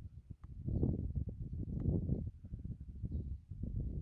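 Low, irregular rumbling noise on the camera's microphone, with a couple of faint clicks near the start and about two seconds in.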